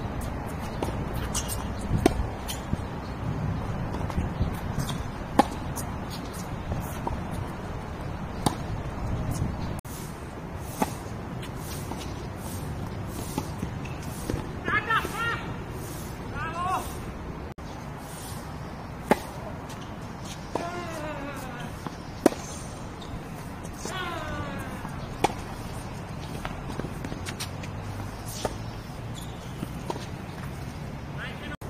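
Tennis balls struck by rackets and bouncing on a hard court during a rally: a string of sharp knocks, often a second or more apart.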